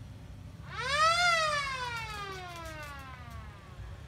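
A car-mounted siren gives one wail. It rises quickly about a second in, then glides slowly down over the next two and a half seconds. It is sounded as an alarm that the neighbourhood has reached fire evacuation level one.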